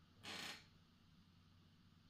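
Near silence: room tone, with one brief soft hiss of breath, an inhale in a pause between spoken phrases, about a quarter second in.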